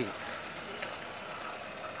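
Hyundai Santro hatchback driving slowly past and away, a steady faint noise of its engine and tyres on the road.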